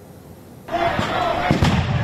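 Street protest crowd at night: crowd noise and shouting voices cut in suddenly under a second in, with a few sharp bangs about a second in and again around a second and a half.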